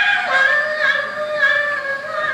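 A female blues-rock singer sings live, sliding down onto one long held note and sustaining it with a slight waver, with little accompaniment under the voice.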